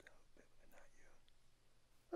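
A man whispering faintly into another man's ear, the words too soft to make out.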